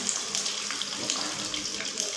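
Raw chicken pieces sizzling in hot oil in a karahi: a steady hiss with small crackles, as a wooden spatula stirs them.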